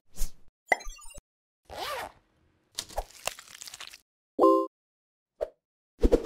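A string of short, separate cartoon-style editing sound effects: pops and clicks, a brief rising-and-falling swoop about two seconds in, a short crackle, and a short pitched beep about four and a half seconds in.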